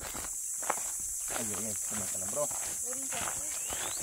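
Footsteps crunching on a dry, leaf-strewn dirt trail, under a steady high-pitched insect drone, with faint voices talking in the background.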